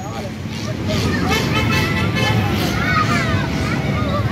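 Background voices of children and adults chattering, with a high-pitched child's voice about a second and a half in, over a steady low rumble.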